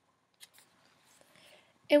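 Faint handling sounds of a paperback book: a single light click about half a second in and a soft paper rustle, then a woman's voice starts reading near the end.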